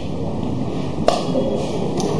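Background room noise picked up by the microphones in a pause between speech, with one sharp click about a second in.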